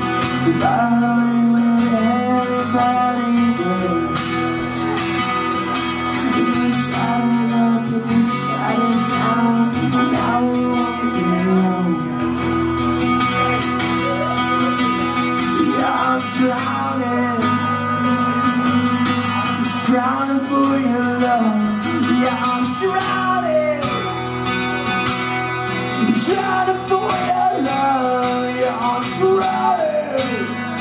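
Acoustic guitar strummed in steady chords while a man sings, a live song played loud through the room's sound system.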